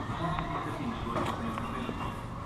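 Outdoor ambience of indistinct distant voices, broken into short fragments, with a few light clicks.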